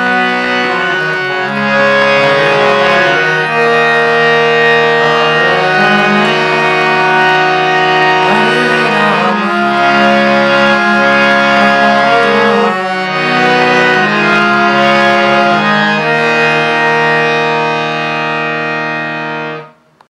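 Harmonium playing a slow kirtan melody in long held notes over a steady low drone note, closing on a held chord that fades and cuts off just before the end.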